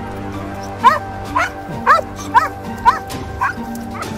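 Boxer dog giving six short, high-pitched barks in quick succession, about two a second, over background music.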